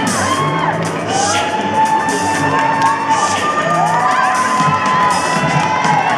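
A group of young children shouting and cheering, with long, held high-pitched calls that rise as they begin, over background music.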